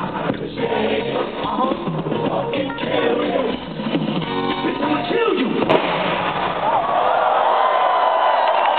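Live rap concert music over a big PA, heard from within the crowd: beat, bass and rapped vocals. The music stops about five seconds in and the crowd cheers and screams.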